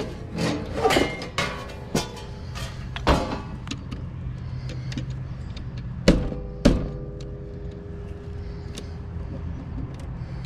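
Clicks and metallic knocks from hands working at a sheet-metal electrical box and its wiring, with two sharper clanks a little after halfway, over a steady low hum.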